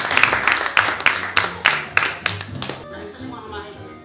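Audience applause that thins out to a few scattered claps and stops about three seconds in, leaving background music playing.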